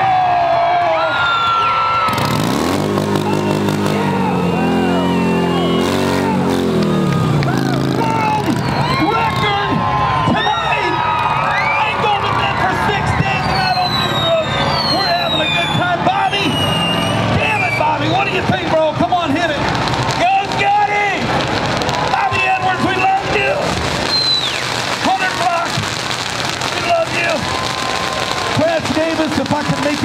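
A motorcycle engine revs up hard about two seconds in and runs at high revs for several seconds before dropping away. Throughout, a crowd cheers, shouts and whistles, with scattered crackling.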